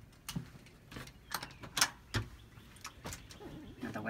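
Doors being opened to enter the apartment: a storm door and an interior door, giving a series of about five latch clicks and knocks, the loudest just under two seconds in, followed by a duller thump.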